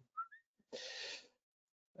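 A man's short, faint breath in between phrases of speech, preceded by two tiny squeaks rising in pitch.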